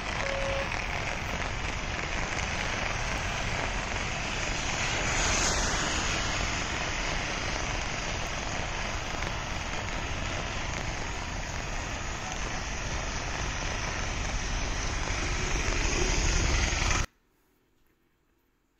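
Steady rushing roar of heavy rain and falling water, even and unbroken, growing a little louder towards the end before it cuts off abruptly a second before the end.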